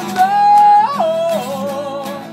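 Acoustic guitar song performed live: a high, wordless vocal line holds one note, then slides down in pitch twice, over strummed acoustic guitar.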